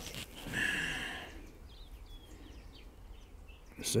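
Birds calling faintly in the background: one harsher call about half a second in, then a few thin chirps.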